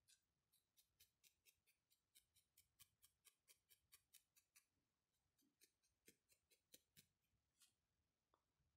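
Felting needle stabbing repeatedly through wool into a foam pad, faint crisp ticks about four a second. The ticking stops briefly about halfway through, then resumes.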